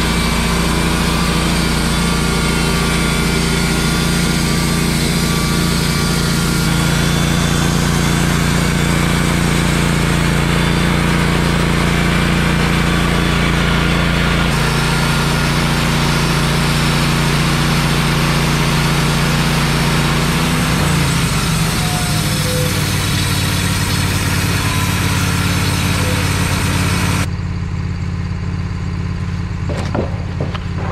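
Wood-Mizer LT15 portable sawmill running steadily, its engine driving the band blade through a pine log. About two-thirds of the way through, the engine note falls and shifts to a new steady pitch.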